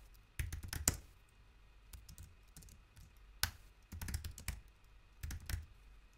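Computer keyboard typing: short, irregular bursts of keystrokes with pauses between them.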